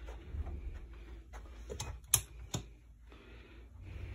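Footsteps and handling noise from a hand-held phone being carried across a room: a low rumble with three sharp clicks close together about two seconds in, the middle one loudest.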